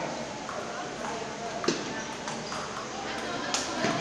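Table tennis ball clicking off the paddles and table during a rally: a few sharp, separate taps, the loudest near the end, over a murmur of voices in the hall.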